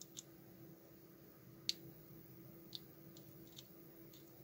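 Faint, scattered small clicks of metal tweezers tapping against the thermometer's plastic case and LCD while the zebra strip connector is being seated, the loudest about a second and a half in, over a faint steady hum.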